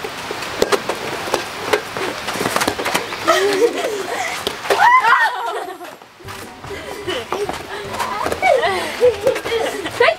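Children and adults calling out and laughing during a fast gaga ball game, with a high cry about five seconds in. Sharp smacks of the rubber ball being swatted and striking the pit's wooden walls come through now and then.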